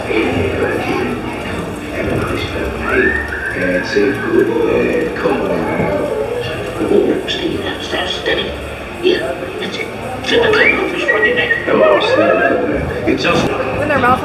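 Recorded animatronic pirate voices calling out over the ride's echoing soundtrack, with two long high-pitched calls, one about three seconds in and one about ten seconds in.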